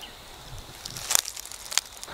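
Crickets trilling steadily in the background, with a few short, sharp crackles about a second in and again near the end.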